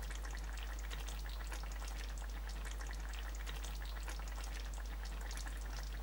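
Vegetables with coconut cream sizzling and bubbling in a frying pan: a steady fine crackle, with a low steady hum underneath.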